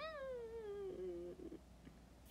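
A woman's high-pitched, drawn-out whine of puzzlement that slides downward in pitch for about a second and a half before stopping.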